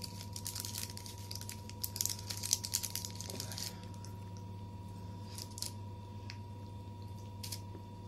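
Foil candy wrapper crinkling and rustling in quick crackles for the first three seconds or so, then only a few faint clicks, over a steady hum.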